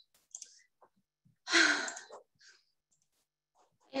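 A woman's single breathy sigh about a second and a half in, a sign of exasperation as she struggles with the screen-sharing controls. A few faint clicks come just before it.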